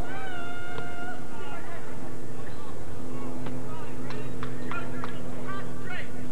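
People shouting and calling out across a soccer field: one long held call at the start, then several short high yells, over a steady low hum from old videotape audio.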